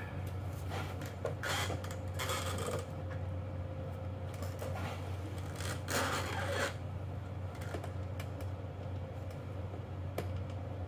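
A steel plate scraping and rubbing against the bottom of a Ford 9-inch axle housing as it is fitted by hand, in three louder scrapes of about half a second to a second and some fainter ones, over a steady low hum.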